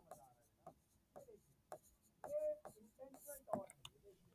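Faint pen strokes and light taps of a stylus writing a word on an interactive whiteboard screen, with a brief soft murmur of voice a little past halfway.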